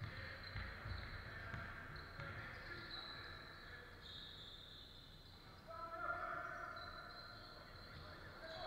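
Basketball game on a wooden court in a large hall: thuds of the ball bouncing in the first couple of seconds and high squeaks of sneakers, then a player's shout about six seconds in.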